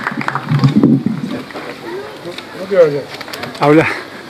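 Indistinct voices of several people talking near the microphone, with no clear words, between speeches.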